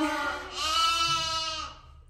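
Lambs bleating for their bottle feed: a call that ends just after the start, then one long, steady bleat of about a second.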